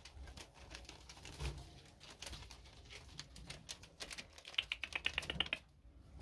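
Pet rats scrabbling through crumpled paper tissue bedding in a cage: a scatter of light clicks and rustles, with a quick rapid run of clicks about four and a half seconds in.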